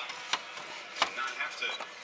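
Pottery sherds being handled on a metal tray, knocking twice, the second knock, about a second in, the louder.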